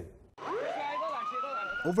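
Emergency vehicle siren winding up: a single wail starts about a third of a second in, climbs steeply in pitch, then levels off and holds a high steady tone.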